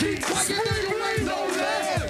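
Live hip hop beat with a crowd of voices shouting along over it, the low kick drum repeating underneath.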